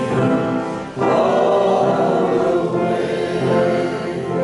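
Congregation singing a hymn together, many voices in sustained lines; the singing dips briefly about a second in, then comes back fuller as the next line begins.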